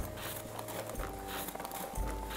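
Paper-craft crank kit turned by its handle, its cardboard crank and rod clacking rhythmically as the rod rides up and down inside its guide box.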